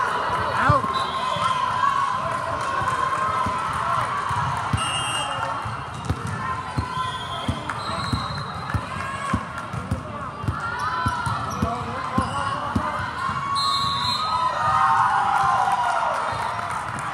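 Volleyballs hitting hands and thudding on a hardwood court at irregular intervals, under a steady hubbub of voices that echoes in a large hall, with a few brief high squeaks.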